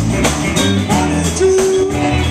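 Live blues band playing a slow blues number: electric guitars, bass and drum kit with congas, with a long held note about a second and a half in.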